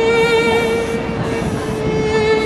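Fiddle music: a long held note that steps down slightly after about a second and a half.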